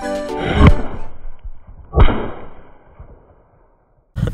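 Two firecrackers bursting: two sharp bangs about a second and a half apart, the second followed by a brief high ringing that fades. Only two of the four crackers went off. Background music plays up to the first bang.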